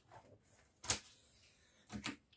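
Tarot cards being handled, with a sharp tap about a second in and a second tap near the end.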